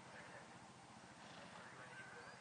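Near silence: faint outdoor ambience on the camera microphone.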